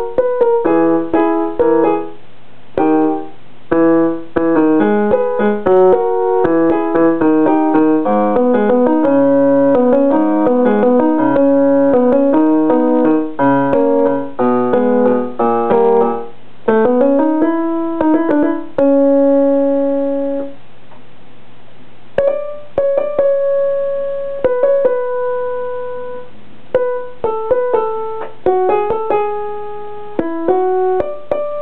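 Electronic keyboard played with a piano sound: a quick run of notes and chords, then a rising glide in pitch a little past halfway into a held chord. A pause of a second or two follows, and slower, sparser notes resume.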